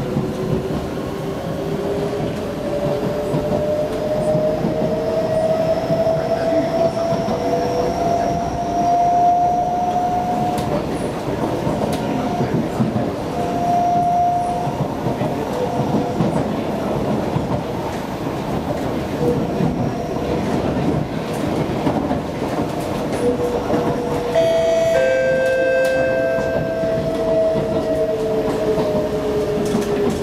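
Inside a moving SMRT Kawasaki C151B electric train, with steady wheel-on-rail rumble throughout. The traction motors' whine rises in pitch as the train accelerates, holds, then falls in pitch near the end as it brakes for the station. A brief high tone sounds shortly before the end.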